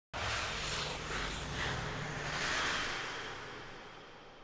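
Television show intro sting: a whooshing noise over a low rumble, fading out over the last second.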